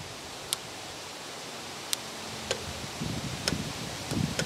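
Hand grease gun pumping grease into a zerk fitting on a tractor's front end loader: a few sharp, irregularly spaced clicks over quiet outdoor background, with low rustling handling noise in the last second.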